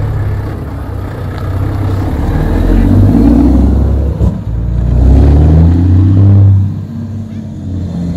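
Diesel engine of a Renault T tractor unit pulling away and passing close by. The engine note grows loud, breaks off briefly about four seconds in, then climbs in pitch again and drops away as the truck drives off.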